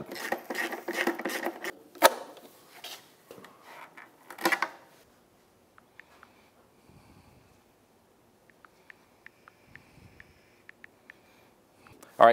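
Hand ratchet clicking rapidly as the 8 mm bolts holding the outboard's lower cowling are backed out, with a sharp click about two seconds in. About four seconds in, the cowling panel is handled with a louder scrape, followed by a quieter stretch and scattered light ticks near the end.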